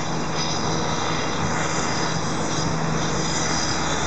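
Steady city road traffic: many car engines idling and running, with tyre noise, at a wide multi-lane intersection.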